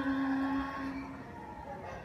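A woman's drawn-out hesitant 'uhhh', held on one steady pitch over a theatre sound system and stopping a little over a second in, leaving low hall noise.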